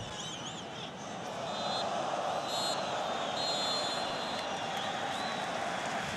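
Stadium crowd noise swelling into cheering, through which a referee's whistle sounds two short blasts and then one long blast: the full-time whistle ending the match.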